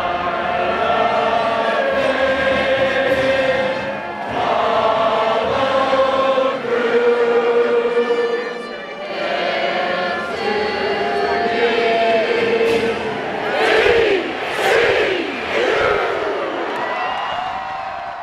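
Many voices singing together in slow phrases of long-held notes. Shouts and whoops break in about fourteen seconds in.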